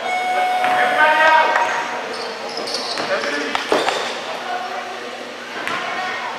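Indistinct voices echoing in a gymnasium, with shouts in the first two seconds, and a few sharp thuds of a basketball bouncing on the hardwood court.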